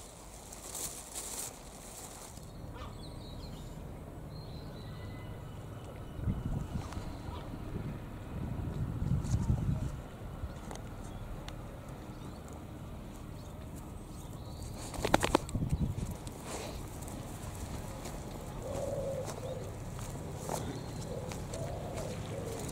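Outdoor ambience with a steady low rumble of wind on the microphone, rising in gusts about a third of the way in. About two-thirds in there is a brief cluster of sharp clicks, and faint bird calls come near the end.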